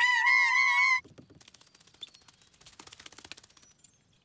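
Cartoon sound effects: a high, wavering whistle-like tone for about a second that cuts off abruptly, followed by a run of faint, rapid, irregular clicks.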